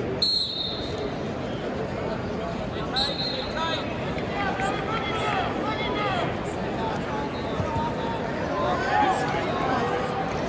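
Referee's whistle blowing a short blast just after the start and another, trilling, about three seconds in, over steady arena crowd noise. Voices in the crowd shout through the middle and later part.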